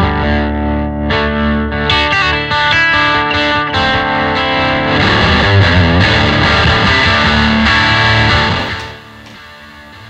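Electric guitar music played with overdrive, with a full low end under the chords. It stops about nine seconds in.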